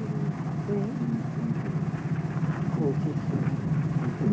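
Indistinct, murmured speech over a steady low hum.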